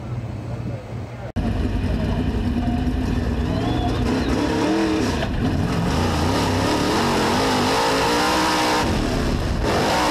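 Dirt-track race car engine running hard, heard from a camera mounted inside the car, its pitch rising and falling with the throttle. It starts abruptly about a second in, after a brief low hum.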